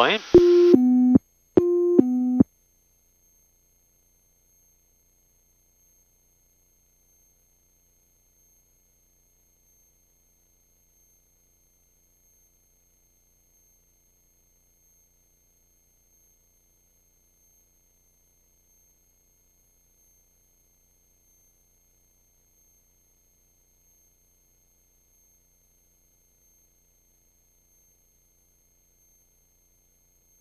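Cockpit autopilot-disconnect alert: a two-note falling tone sounds twice, as the autopilot is switched off for hand flying. After it the sound track goes dead silent.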